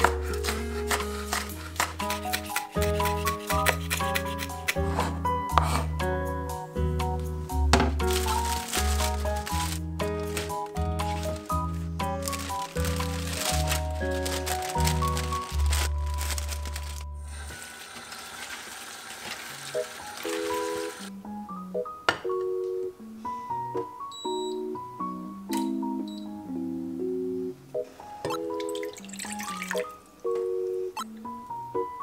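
Background music with a steady beat and bass line. About two-thirds of the way in, the bass drops away and a few seconds of running tap water are heard before a lighter melody carries on.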